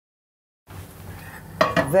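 A dead-silent gap of under a second, then kitchen room sound with light clatter of cookware and a woman's voice starting near the end.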